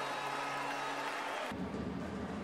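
Ice hockey arena ambience: a steady crowd hum with faint music, and an abrupt change in the background about one and a half seconds in.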